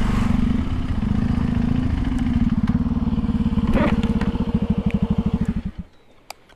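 KTM 390 Adventure's single-cylinder engine idling with an even pulse; a little before the end its beat slows and it cuts out as the engine is switched off.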